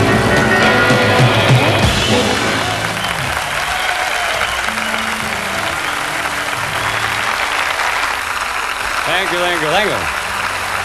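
Rockabilly band with electric guitars and drums ending a song in the first two or three seconds, followed by a studio audience applauding and cheering. A voice speaks briefly near the end.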